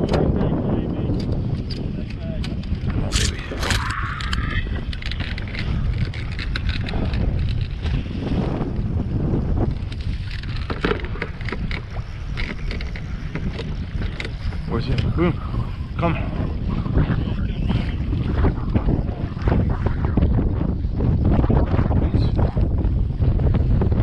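Wind buffeting the microphone and choppy waves slapping against a bass boat's hull in rough water, with frequent sharp knocks throughout.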